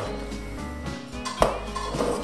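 Steady background music, with one sharp knock about one and a half seconds in as a piece of tomato drops into a stainless-steel blender jug.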